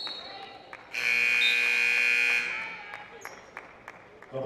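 Basketball gym scoreboard horn sounding one steady buzz about a second and a half long, beginning about a second in, while play is stopped.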